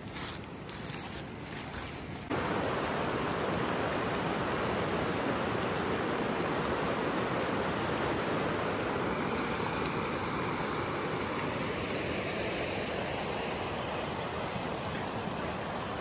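Shallow mountain river rushing and splashing over rocks: a steady rush of water, fainter at first, then much louder and closer from about two seconds in.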